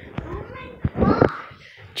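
A young child's voice in the background, loudest about a second in, with a couple of sharp clicks before it.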